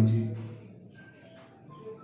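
A man's voice finishes a phrase in the first half-second, then a pause in which only a steady, high-pitched whine carries on underneath.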